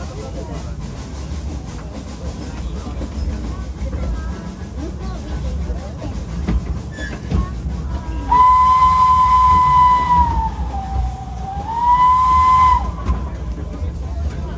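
Narrow-gauge steam locomotive running with a steady rumble and rail clicks, then its steam whistle is blown once for about four seconds, about halfway through: the whistle's pitch sags lower in the middle and rises back before it cuts off.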